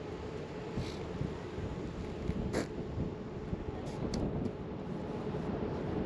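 Steady outdoor background rush, even and unbroken, with a few faint clicks.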